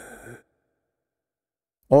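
A man's exhaled breath trailing off at the end of a spoken line, then dead silence for about a second and a half before his voice starts again at the very end.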